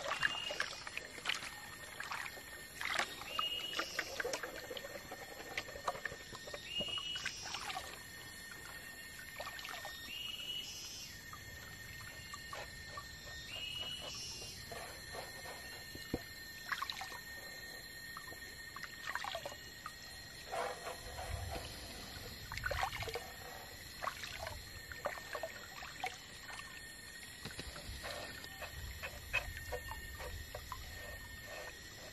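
Water sloshing and splashing as a gold pan is swirled and dipped in a shallow stream, washing gravel down to concentrate, most active in the first few seconds. Behind it run a steady high tone and short repeated chirping calls.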